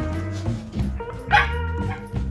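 Background music, with a short, sharp yip from a Shetland Sheepdog puppy a little past halfway.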